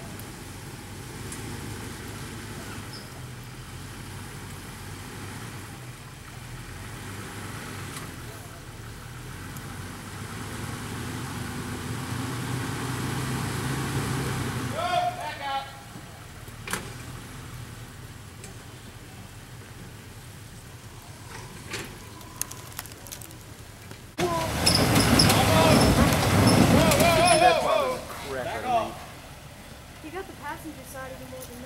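Jeep Wrangler engine working at low speed as the Jeep crawls over a rock ledge, rising in revs over a few seconds midway, with scattered knocks. About 24 seconds in the engine is revved hard for roughly four seconds, the loudest part, as the wheels dig into loose rock and throw up dust on a steep climb.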